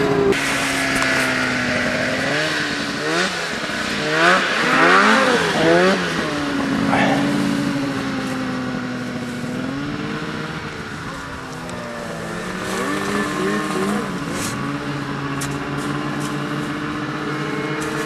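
Snowmobile engine running. It is revved in several quick up-and-down bursts a few seconds in, then runs more steadily with gentle rises and falls in pitch.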